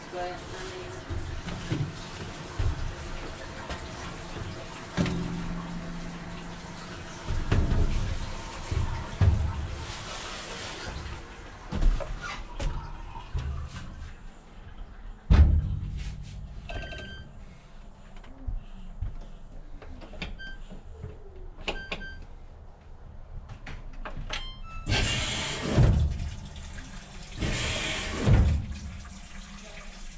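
Top-loading washing machine being set: its control panel beeps several times as the dials and Start button are worked, followed by two loud bursts of rushing noise near the end as the machine starts. Handling noise and water sounds come before.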